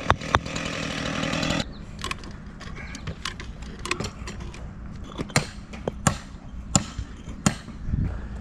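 A small engine-driven tool runs for about the first second and a half, then cuts off. After that comes a run of sharp clicks and knocks as concrete retaining-wall blocks are tapped with a hammer, glued with a caulk gun of construction adhesive, and set in place.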